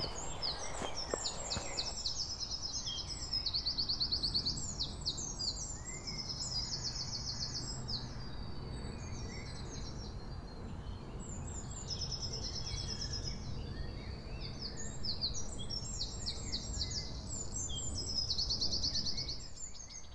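Several songbirds singing at once, overlapping songs full of fast, high trills and repeated phrases, over a low steady background rumble.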